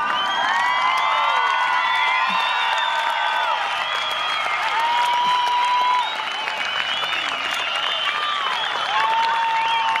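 A crowd breaks into cheering, whooping and whistling with applause as the fireworks display ends. It swells suddenly at the start and carries on loudly, with long held whistles partway through and again near the end.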